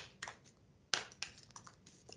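A quick string of sharp clicks and taps: two louder pairs about a second apart, then several lighter ones, over a faint low hum.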